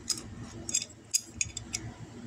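Small metallic clicks and ticks, about half a dozen, as a number eight steel screw, washer and nut are handled and fitted through the hole of a copper bus bar.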